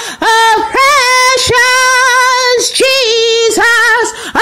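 A woman singing solo with no accompaniment: a slow melody of long held notes with vibrato, broken by short breaths between phrases.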